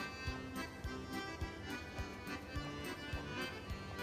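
Knife blade tapping on a plastic cutting board roughly three times a second as a herring fillet is cut into small cubes, over quiet background music.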